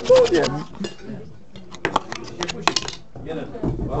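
A fork clinking against a plate, several sharp clinks in the middle, with people talking at the start and near the end.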